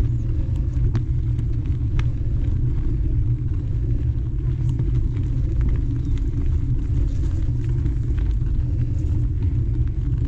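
Mountain bike riding on dirt singletrack: a steady low rumble of wind on the microphone and knobby tyres rolling over the trail, with occasional light clicks and rattles from the bike.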